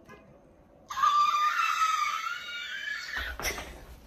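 A woman's high-pitched squeal of excitement. It starts abruptly about a second in, climbs a little in pitch over about two seconds, and is followed by a brief thump.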